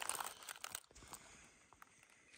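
Footsteps crunching on loose rock fragments and stony rubble: a few irregular crunches in the first second, then scattered faint clicks.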